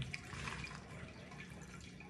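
Water being poured from a plastic measuring cup into a mixing bowl of flour, faint.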